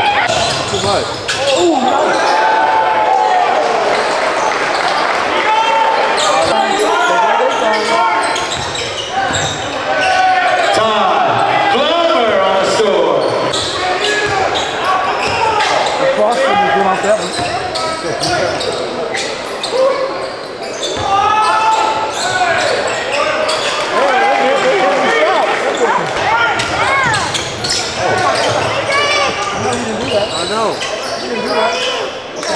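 Basketball dribbled on a hardwood gym court during live game play, with players and spectators shouting over one another throughout.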